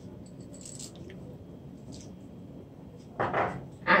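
Faint clinks of a small glass bowl as pimento (allspice) seeds are tipped from it into a large pot of broth, then a louder, brief sound about three seconds in.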